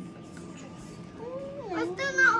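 A young child's high-pitched voice, starting a little past halfway and gliding up and down in pitch without clear words.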